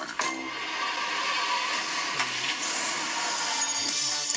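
A steady rushing noise from a TV show's soundtrack, playing through the television, with a small click about halfway through.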